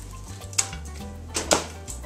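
A few light clicks and taps in a white ceramic baking dish as pieces of cut tomato are dropped into it, two of them close together about a second and a half in, over background music with a steady bass line.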